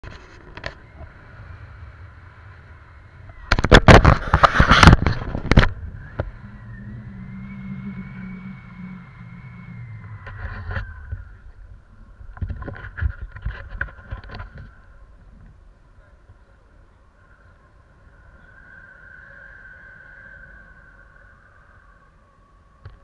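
Wind buffeting the microphone of a pole-mounted action camera during a tandem paraglider launch and flight, loudest in a gust of rushing noise about four seconds in and again around thirteen seconds. A faint, steady high tone runs underneath.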